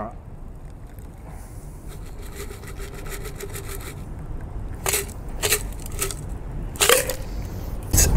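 Shaken daiquiri poured from a stainless Boston shaker tin through a Hawthorne strainer into a coupe glass: a thin stream of liquid with a faint crackle of ice shards. In the second half come a few sharp clinks of ice against the metal tin and strainer.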